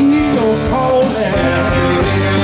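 Live blues-rock band with electric guitars and drums playing loudly, with a lead line of bending notes.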